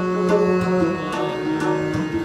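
Sikh kirtan in classical raag style: harmonium notes held and changing over tabla strokes, with rabab strings plucked alongside.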